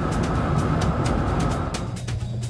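Steady road and wind noise of a car at highway speed, heard from inside the cabin, cutting off abruptly near the end.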